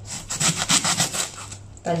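Small kitchen knife sawing into the dry, papery skin and top of a whole onion: a quick run of short scraping strokes that stops about a second and a half in.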